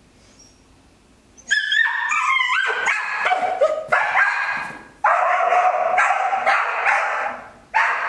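Dog barking and yipping in high-pitched, excited runs while it sprints a jump course, starting about a second and a half in and going on almost without pause.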